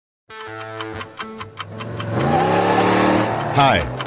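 Intro theme: a clock-like ticking, about four ticks a second, over sustained music tones, then a rising swell that climbs in pitch and loudness for about a second and a half. A man's voice says 'Hi' near the end.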